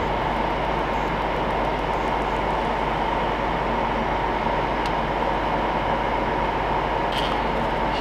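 Steady whirring fan noise from running computer equipment, unchanging, with a faint constant high whine and a low hum underneath.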